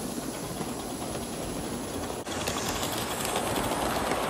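Gauge 1 live-steam locomotive, SR&RL No. 24, running with a train: a steady hiss of steam with the wheels clicking over the rail joints. About two seconds in the sound cuts to a brighter, slightly louder stretch.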